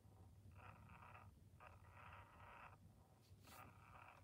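Battery-powered breathing mechanism inside a Perfect Petzzz toy cat, giving a faint whir that comes in soft bursts about once a second, one with each rise of the plush body, over a steady low hum.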